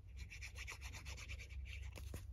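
Fine-tip nozzle of a glue bottle scraping across a paper card as glue is squeezed out: a faint, fast run of scratchy ticks, about ten a second, starting just after the beginning.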